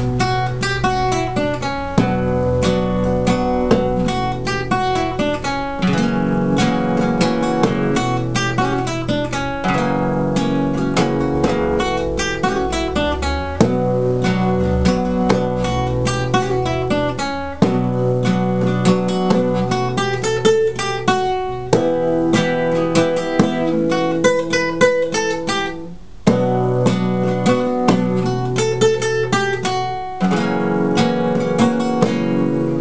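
Cutaway classical guitar playing a rumba: a picked melody mixed with rhythmic strums, with a short break about four seconds before the end.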